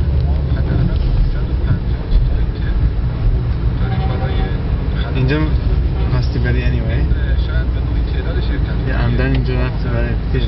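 Steady low rumble of a car's engine and tyres heard from inside the cabin while driving in traffic, with voices talking over it.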